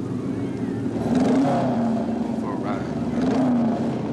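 Motorcycle engines revving and running, the pitch climbing about a second in and again near the end.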